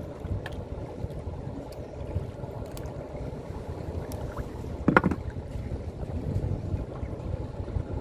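Wind on the microphone and river water moving around a small wooden boat, with faint clicks of a gill net being worked by hand and one brief, louder sound about five seconds in.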